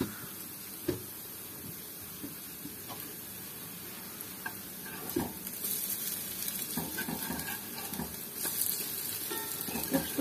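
Apple fritters frying in oil in a pan: a steady sizzle that grows louder about halfway through, with a few light clicks.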